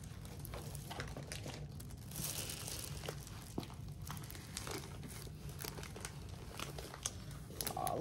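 Rolled diamond painting canvas with its clear plastic cover film being unrolled and smoothed flat by hand: soft crinkling and rustling of the plastic, with scattered light ticks and a brief louder rustle about two seconds in.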